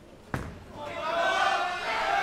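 A bowling ball lands on the lane with one sharp thud just after release, then voices rise in loud calling as the ball rolls toward the pins.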